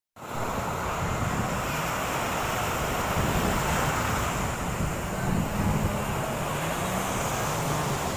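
Small surf breaking and washing up the sand at the water's edge, steady throughout, with wind on the microphone.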